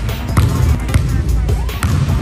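A basketball bouncing on a hardwood gym floor a couple of times, over background music.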